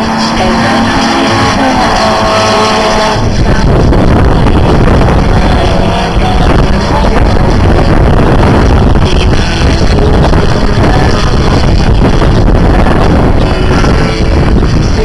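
Pop music from the circuit's loudspeakers for about three seconds, then a sudden change to a loud, rough drone of racing car engines mixed with wind on the microphone, the music still under it.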